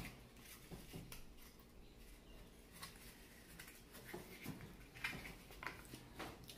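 Quiet handling of a cardboard tube and masking tape as a cardboard ear is taped on: a few soft, scattered taps and rustles over faint room noise.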